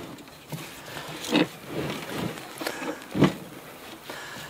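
Knocks and scuffs from a wooden planter box being pushed into place against the house wall over the deck boards, with two louder knocks, one about a third of the way in and one near the end.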